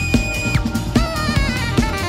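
Live funk band with a saxophone solo over drum kit and bass: the saxophone holds a high screaming note that breaks off about half a second in, then plays a quick run of shorter notes with vibrato.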